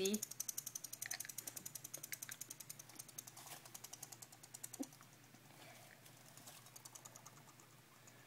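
Guinea pig chattering its teeth: a rapid, even train of clicks, roughly a dozen a second, that fades out about five seconds in. Teeth chattering is the usual sign of an irritated or agitated guinea pig.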